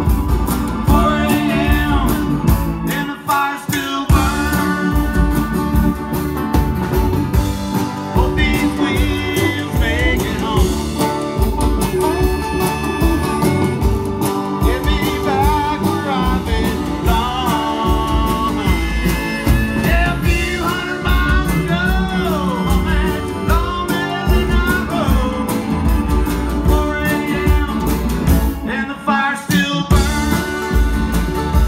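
A live band playing a bluesy country-rock song: a man singing over electric guitar, keyboards and drums with a steady beat.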